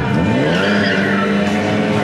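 A car engine revving up sharply as the car accelerates hard away, its pitch climbing over the first half second and then holding. The tyres screech on the concrete floor as the wheels spin.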